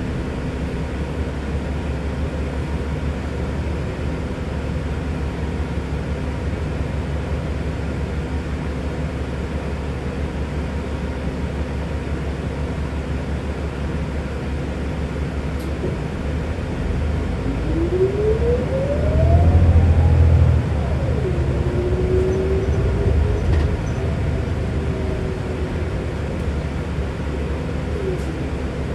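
Inside a New Flyer XD60 articulated diesel bus: a steady low engine drone, then the bus accelerates, the engine getting louder with a whine rising in pitch. The whine drops sharply at a gear change and climbs again more gently, fading back into the drone near the end.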